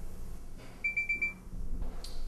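A quick run of about four short, high-pitched electronic beeps, about a second in.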